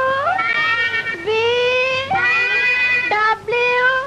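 A girl singing in a high voice, holding long notes that slide up and down between pitches, with short breaks between phrases.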